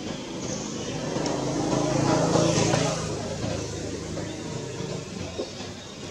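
A motor vehicle passing: a rising and falling noise that peaks about halfway through and then fades.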